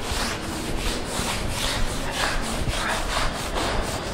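Board duster rubbing back and forth over a chalkboard, erasing chalk writing in quick repeated strokes.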